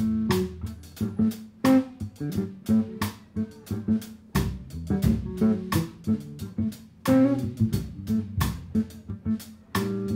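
Live instrumental band music: a hollow-body electric guitar, an electric bass and a drum kit playing a groove, the drums keeping a steady beat.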